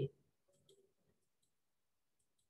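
A few faint computer mouse clicks, short and scattered, in a quiet room.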